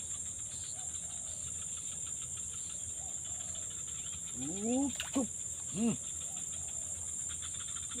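Steady high-pitched insect chorus, crickets, running throughout. About halfway through come three short rising-and-falling calls and a sharp click.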